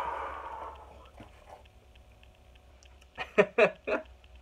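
A man laughing excitedly in a few short bursts near the end. At the start a brief breathy rush of sound fades away over about a second.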